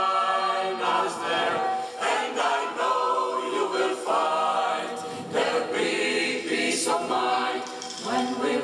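Mixed choir of women's and men's voices singing a cappella in harmony, with sustained chords that shift to new notes every second or so.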